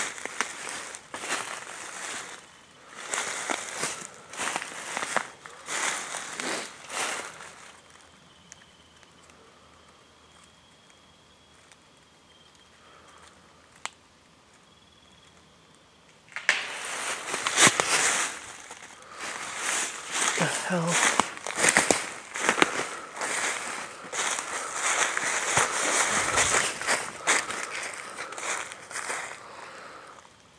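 Footsteps crunching through dry fallen leaves, about one step a second, for the first several seconds. The steps then stop for about eight seconds, leaving only a faint steady high tone and a single sharp snap about fourteen seconds in. After that comes fast, continuous, louder crunching and crackling of leaves underfoot.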